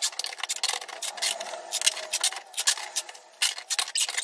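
Cheap plastic packing tape being pulled off the roll and pressed onto a cardboard box: a run of many short, sharp ripping rasps.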